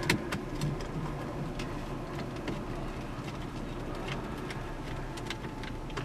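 Scattered faint clicks and taps of plastic as a BMW Business CD head unit is handled and seated in the car's dash, over a steady background hum.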